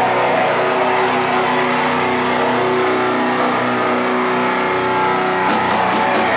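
Hardcore punk band playing live at full volume: distorted electric guitar holding sustained, ringing chords, with drums and cymbal crashes coming in near the end.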